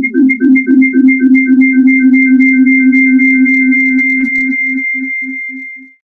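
Synthesized electronic tones: a rapid pulsing figure, about four pulses a second, with a low note and two high notes. It merges into a held note, then pulses again, fading and cutting off near the end.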